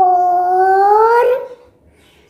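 A child's voice holding one long drawn-out word for about a second and a half, rising slightly in pitch near the end.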